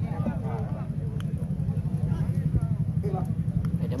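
Wind rumbling and buffeting on the microphone, under faint distant shouting voices, with a couple of light clicks.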